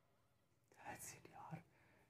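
Near silence, with a man's faint whispered words lasting under a second, about a second in.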